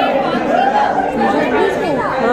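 Overlapping chatter of several voices talking at once in a large room, with no single voice standing out.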